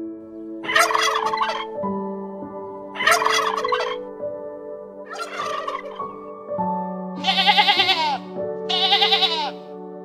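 Domestic turkey tom gobbling, a run of calls with the two loudest, rapidly warbling gobbles in the second half, over soft background music.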